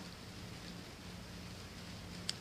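Quiet room tone with a faint steady low hum; no distinct sound.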